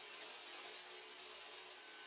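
Near silence: faint steady hiss with a faint steady hum.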